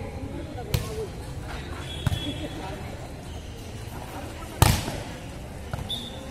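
A volleyball being struck by hand, starting with the serve: a sharp hit under a second in, a lighter one around two seconds, and the loudest hit about four and a half seconds in, with faint voices around.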